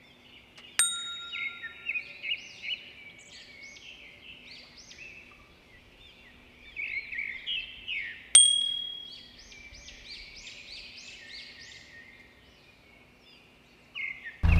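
Two sharp metallic dings about seven and a half seconds apart, each ringing briefly, with small birds chirping busily between them.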